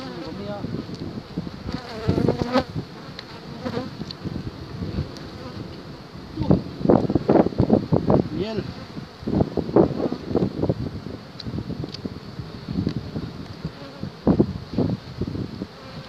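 Honeybees buzzing around an opened hive, single bees flying close past the microphone in loud passes that rise and fall in pitch, thickest from about six to eleven seconds in.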